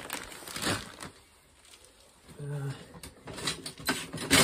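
Rummaging in a clear plastic storage tub: a brief rustle about half a second in, then a few short knocks and rustles near the end as items are moved about.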